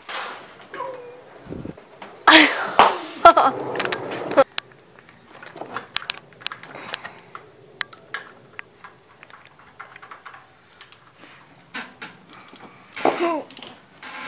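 Loud laughter about two seconds in, then scattered light clicks and knocks of hands and tools working at the oil-filter housing under a car.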